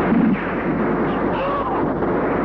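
Film-soundtrack gunfire: a loud gunshot blast right at the start over a dense, continuous din, followed by a short rising-and-falling tone about a second and a half in.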